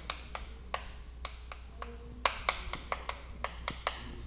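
Chalk on a chalkboard being written with: a quiet string of irregular sharp taps and clicks, several a second, as a short word is written, over a faint steady low room hum.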